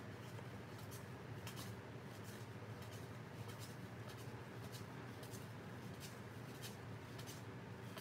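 Faint, soft ticks and slides of 1984 Fleer cardboard baseball cards being thumbed through by hand, one card at a time, several flicks a second.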